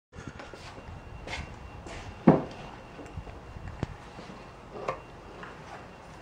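A few scattered light knocks and taps over a low room background. The loudest comes about two seconds in, and a sharp click follows near four seconds.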